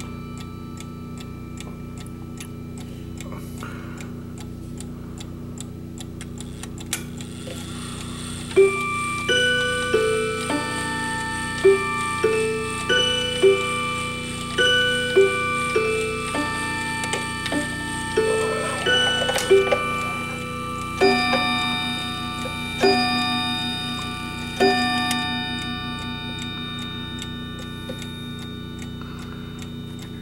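A Sligh mechanical clock ticking steadily. About eight seconds in, its chime plays a melody of struck, ringing notes for some sixteen seconds, then the ticking goes on alone.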